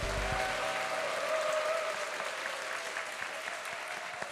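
Audience applauding steadily, easing off a little toward the end.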